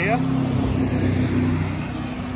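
A truck driving past on the road, its engine a steady low drone that is loudest in the first second and a half and then eases off.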